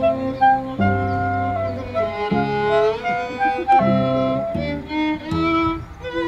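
Improvised trio of cello, clarinet and violin playing sustained notes over a low cello line, with a sliding rise in pitch about two seconds in.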